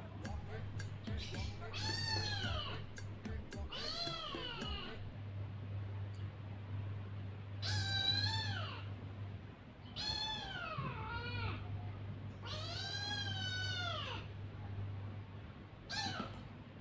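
Kitten meowing repeatedly: about five or six high meows, each about a second long and rising then falling in pitch, a second or two apart.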